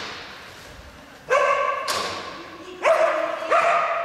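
A border collie barking three times, about a second in and twice more near the end, each bark echoing in the large hall.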